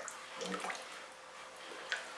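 A bucket of wood-ash and terracotta glaze slurry being stirred by hand: faint wet swishing and sloshing, with a light click near the end.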